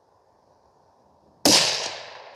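A single rifle shot from a bolt-action precision rifle about one and a half seconds in, sharp and loud, with a long fading echo after it.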